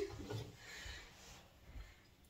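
Faint rubbing and scraping of a spatula against the inside of a glass bowl as the last of the melted chocolate and peanut butter is scraped out.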